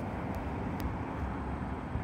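Steady low outdoor rumble with nothing standing out.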